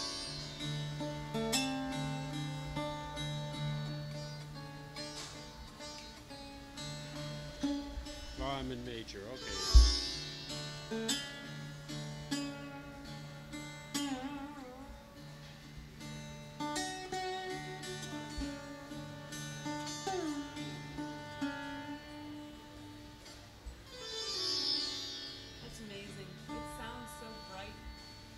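Mohan veena, a slide guitar with a second layer of sympathetic strings: plucked notes ring and glide in pitch over a steady drone of the sympathetic strings. A single sharp thump sounds about ten seconds in.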